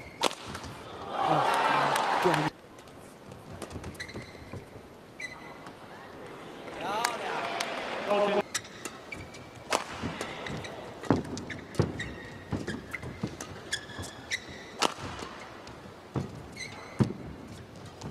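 Badminton rally: rackets striking the shuttlecock at irregular intervals, with short shoe squeaks on the court floor. The arena crowd swells loudly twice, about a second in and again about seven seconds in.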